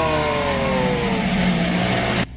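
A voice calls "halo" in a falling tone over a loud, steady rushing noise with a low hum.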